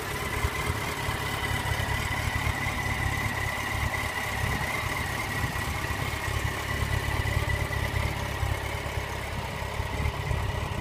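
Yamaha FZ1 Fazer's inline-four engine idling steadily, with a thin high whine held over the low rumble.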